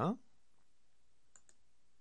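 Two faint computer mouse clicks in quick succession about halfway through, after the tail of a spoken word.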